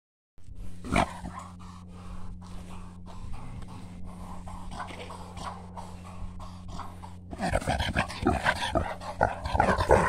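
Wild pig grunting close by, much louder and busier from about seven seconds in. Before that, a run of soft regular clicks, about three a second.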